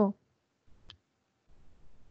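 A computer mouse button clicked once, a single short sharp click about a second in.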